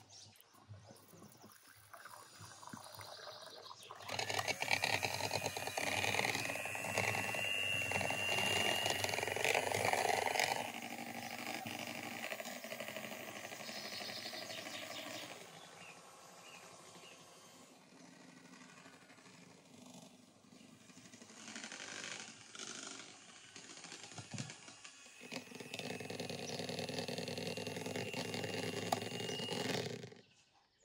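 Electric hand mixer running steadily, beating a mixture in a bowl. It runs in two long stretches with a quieter gap between them.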